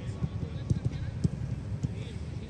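Footballs being kicked and struck on a grass pitch: several dull thuds at uneven intervals.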